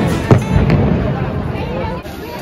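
Fireworks exploding overhead: a sharp bang about a third of a second in, then a smaller pop, each with a rumbling tail, over background music and voices.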